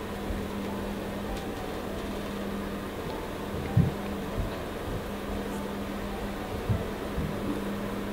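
Steady low background hum, like a fan or air conditioner running, with a couple of soft low thumps about four and seven seconds in.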